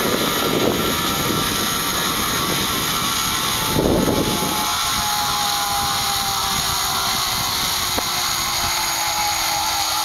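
Zip-line trolley pulleys running along the steel cable with a steady whine that falls slowly in pitch as the rider nears the landing platform. Wind rushes past the microphone in gusts, strongest in the first second and again about four seconds in.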